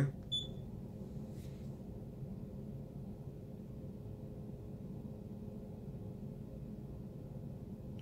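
Steady low hum of a motorized display turntable turning slowly, with a faint click just after the start.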